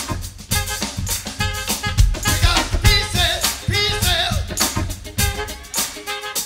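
Live funk band playing an up-tempo groove with drums driving a steady beat and pitched parts riding above it.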